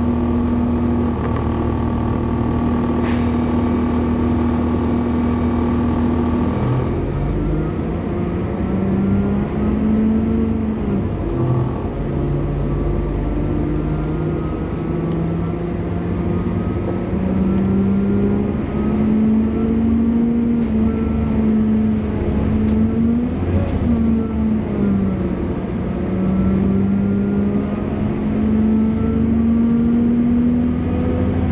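Inside a Class 197 diesel multiple unit under way: the underfloor diesel engine and running gear sound continuously. A steady engine note holds until about a quarter of the way in, then changes, and afterwards the pitch rises and falls as the train's speed changes.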